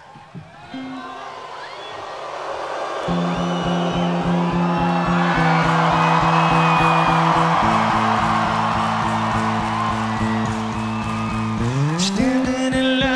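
Live rock music: a festival crowd cheering while low sustained notes play over a quick, steady pulse that starts a few seconds in. Near the end a note slides upward, leading into the song, with the lead guitar taken out.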